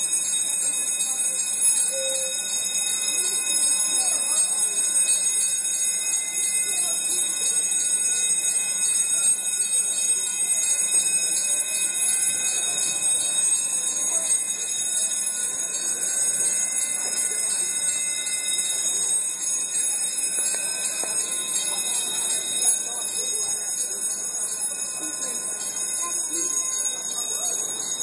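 Drawbridge traffic-gate warning bell ringing loudly and without a break, a high, rapid electric ring that signals the gates are in operation for the bridge span.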